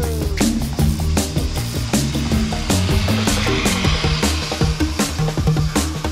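Background rock music with a steady drum beat; about halfway through, a zip-line trolley's pulley briefly whirs along the steel cable under the music.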